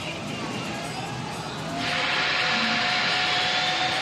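Steel roller coaster train running on its track: a loud rushing roar starts suddenly about two seconds in and holds, over a steady whine.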